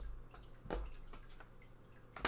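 Soft taps and slides of tarot cards being handled and drawn from the deck over a wooden table, with one clearer tap about two thirds of a second in. A faint low hum runs underneath.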